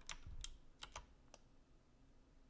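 About five or six faint computer keyboard keystrokes, irregularly spaced over the first second and a half, as a dimension value is typed in.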